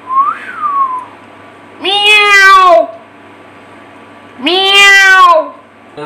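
A domestic cat meowing twice, two long, loud drawn-out meows a couple of seconds apart. A short rising-and-falling whistle comes first.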